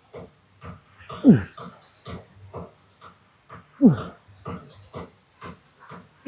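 A man grunting with effort on each rep of a cable chest pull: two short grunts that fall in pitch, about two and a half seconds apart.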